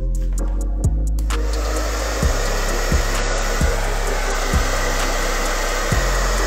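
A hand-held hair dryer switches on about a second in and then blows steadily, heating the lace-wig glue at the hairline to set it. Background music with a deep bass beat runs throughout.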